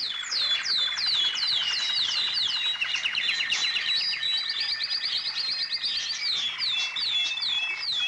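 A chorus of many small birds chirping, with a string of quick falling chirps over a steady, dense trill. It stops abruptly at the end.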